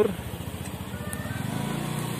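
A motorcycle engine running close by, its low, fast putter growing louder over the second half.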